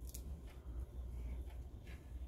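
Faint rustle and a few soft scrapes of a braided rope being drawn by hand through the coils of a noose knot, over a low steady hum.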